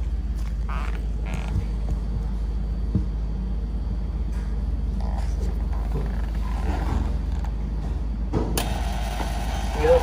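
Handling noises over a steady low hum, then about eight and a half seconds in a sharp click as the drink cooler is plugged in, followed by a louder steady hum. This is the 'click of death': the cooler's compressor failing to start.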